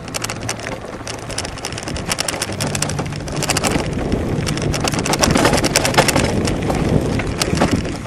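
E-bike tyres crunching over gravel and sand on a dirt track, a dense crackling that grows louder past the middle, over a low steady hum and some wind on the microphone.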